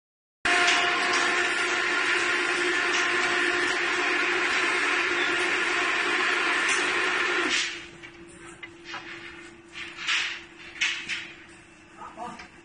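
Workshop machinery running with a loud, steady hum and whine that drops away abruptly about seven and a half seconds in. A quieter hum carries on, broken by a few scattered knocks.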